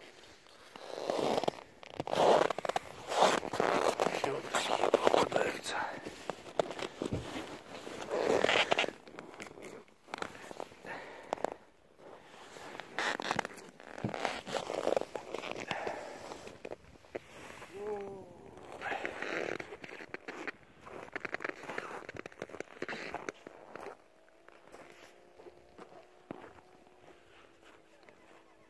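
A man's voice talking indistinctly, mixed with rustling and crackling handling noise; in the last few seconds it gives way to a faint steady hum of several tones.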